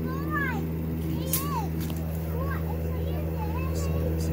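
Several short, high vocal calls that rise and fall in pitch, the first and second the longest, over a steady low mechanical hum.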